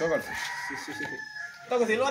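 A rooster crowing: one long, held call lasting about a second and a half, with talk resuming near the end.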